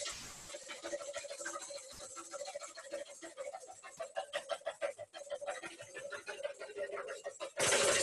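Wire whisk beating egg whites by hand in a mixing bowl: rapid, even strokes clicking against the bowl several times a second.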